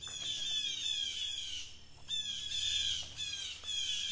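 Blue jays calling in two quick runs of short, falling calls, with a brief break about halfway through.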